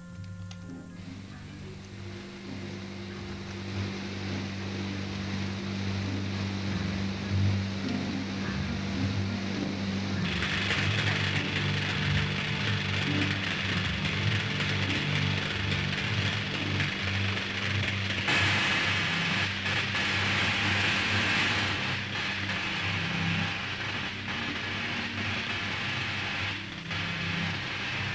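Film score with a steady low hum, joined about ten seconds in by a crackling electrical hiss that starts suddenly and grows louder about eight seconds later: the jewel-destroying machine switched on and charging.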